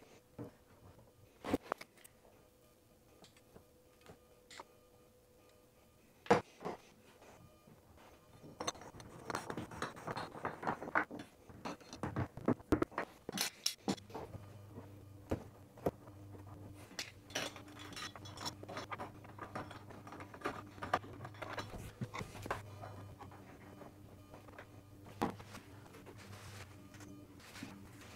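Scattered light clicks, knocks and clinks of chrome bathtub drain and overflow trim parts being handled and fitted against an acrylic tub. A faint low steady hum comes in about halfway through.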